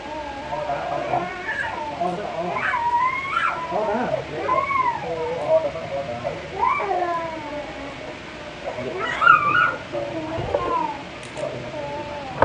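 A toddler crying and wailing, long wavering cries that slide up and down in pitch, loudest about nine seconds in; the child is upset in the barber's chair setting before a haircut.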